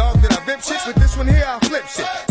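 Hip hop track with rapping over a heavy bass beat.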